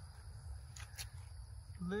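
Night insects such as crickets calling in a steady high chorus over a low rumble, with two faint clicks about a second in; a man's voice starts right at the end.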